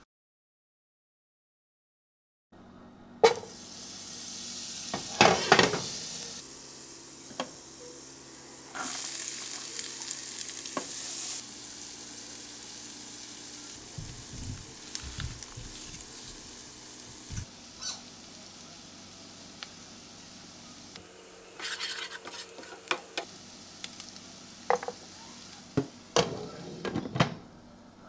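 Chopped onion sizzling in butter in a frying pan, with a utensil stirring and knocking against the pan. The sizzling starts after a couple of seconds of silence.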